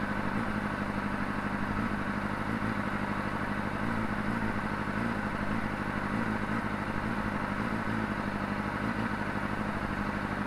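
Honda CBR600RR inline-four engine idling steadily.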